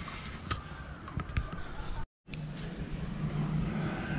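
Outdoor ambience with murmured background voices and a few light knocks, with the sound cutting out completely for a moment about halfway through.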